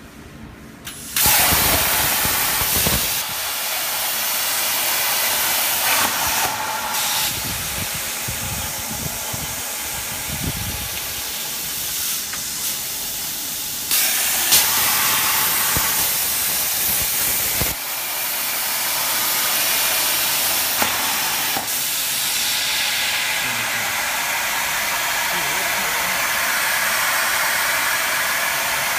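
Twin-torch CNC plasma cutter piercing and cutting holes in steel rectangular tube: a loud, steady hiss of the plasma arc and its air that starts about a second in. The hiss changes in level several times as cuts begin and end.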